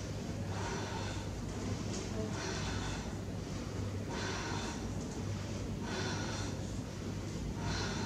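A person breathing hard and audibly, about one breath a second, each inhale and exhale paced with a yoga movement of stretching the legs out and hugging the knees. A steady low hum sits underneath.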